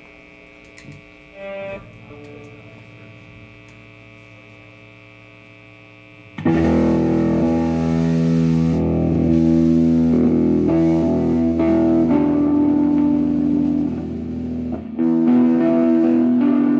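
Live rock band with distorted electric guitars: quiet, held guitar tones, then about six seconds in the full band comes in loud with sustained distorted chords and bass. The band drops back briefly near the end, then plays loud again.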